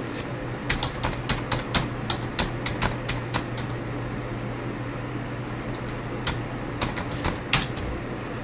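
Computer keyboard keys clicking in two quick, irregular runs of typing, one in the first half and a shorter one near the end, over a steady low hum.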